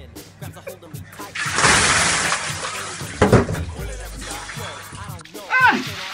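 A bucket of ice water pouring and splashing for about four seconds, starting and stopping abruptly, with a sharp knock partway through; hip hop music plays underneath and a short yell comes near the end.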